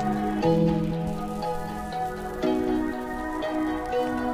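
Calm lo-fi music: soft sustained keyboard chords that change about every two seconds, over a steady crackling noise layer.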